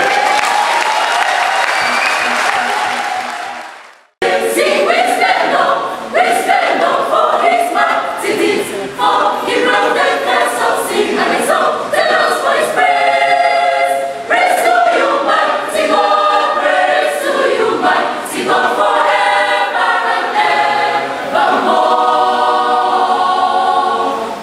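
Choir singing, several voices together, starting abruptly about four seconds in after a few seconds of noise fade out.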